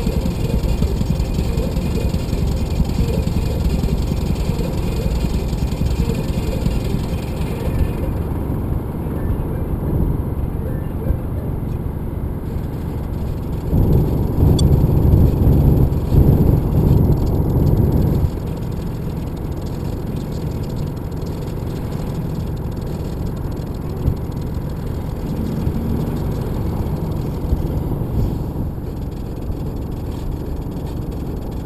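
Car driving at speed, heard from inside the cabin: a steady low rumble of road and engine noise, louder for about four seconds midway.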